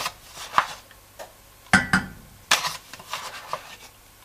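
A wooden spoon scooping flour out of a paper flour bag and tipping it into a steel pot, giving a handful of short scrapes, taps and paper rustles.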